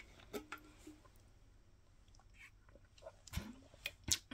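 Faint sounds of a person sipping a drink from a bottle: a few small clicks and swallowing sounds, with a short hum about half a second in.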